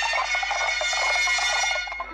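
Film-score music: held, reedy wind-instrument notes over a quick, busy figure, dropping in level at the end.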